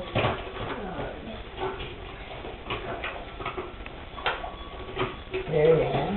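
A hard plastic toy being handled, giving scattered light clicks and knocks over low room noise.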